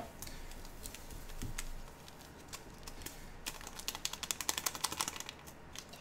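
A small yeast packet being emptied over a steel mixer bowl of flour: a quick run of light ticks and crinkles, lasting about two seconds, past the middle.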